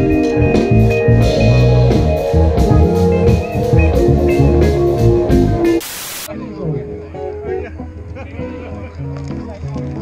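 Live band with electric guitars, keyboard and drum kit playing, cut off about six seconds in by a short burst of TV-static hiss. After it, quieter music carries on.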